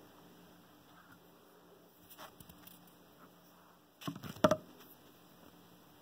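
Quiet handling sounds: faint rustling, then a short cluster of knocks and clicks about four seconds in as the thread is worked through the machine's guide and the phone is picked up.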